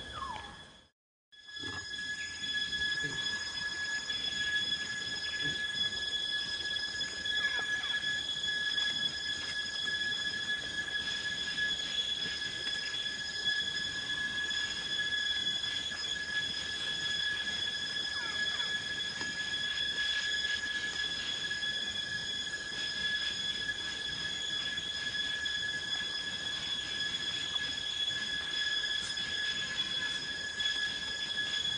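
Steady high-pitched insect drone, typical of cicadas in tropical forest: one unchanging whining tone with overtones, broken by a brief silence about a second in.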